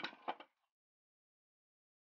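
A brief clatter of two or three metal knocks, about half a second long, as the Kawasaki Z750's engine is worked by hand out of the motorcycle frame.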